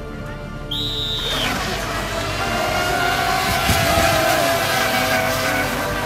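Electric RC racing boats running at speed on the water. About a second in, a high-pitched motor whine comes in suddenly with a rush of hull and spray noise, and the whine falls in pitch as a boat passes. Then comes a steady rush with a wavering motor whine.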